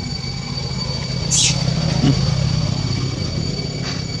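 A low, steady engine-like rumble, louder in the middle, with a thin steady high whine over it and a brief high-pitched squeak about a second and a half in.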